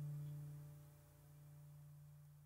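Closing note of the background music, a held low tone with its overtones, dying away toward silence.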